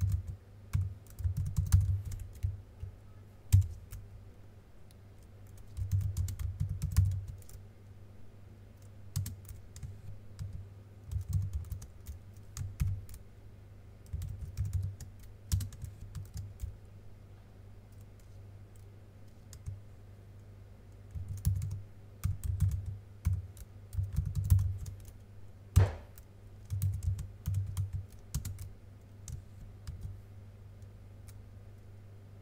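Computer keyboard typing in bursts of rapid keystrokes with short pauses in between, with one louder single knock near the end.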